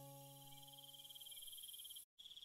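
Faint crickets chirping in a steady, fast-pulsing trill, under the last fading ring of a soft piano chord.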